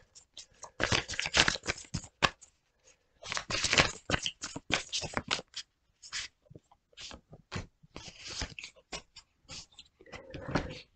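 A deck of tarot cards being shuffled by hand, in bursts of quick card flicks with short pauses between.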